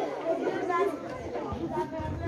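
Indistinct chatter of many voices talking at once, a seated audience of schoolchildren talking among themselves.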